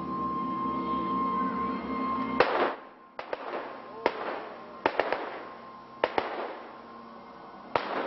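A held musical note hums steadily. About two and a half seconds in, a ragged volley of gunshots cuts it off: about nine sharp cracks, the first the loudest, each trailing an open-air echo.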